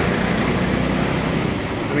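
Hydraulic CNC press brake running through its cycle: a steady mechanical noise with a hiss that drops away near the end.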